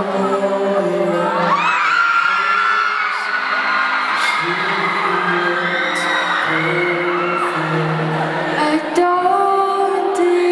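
Live band playing a slow song, acoustic guitar and keyboard holding sustained chords, with many high-pitched audience screams and whoops over the middle. A single sharp hit comes near the end, and a voice starts singing right at the end.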